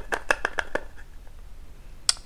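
Small plastic clicks and taps from handling a makeup setting-powder container, a quick run of about six in the first second, then quieter.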